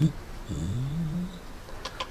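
A brief click, then a short low voice sound that rises in pitch over about a second.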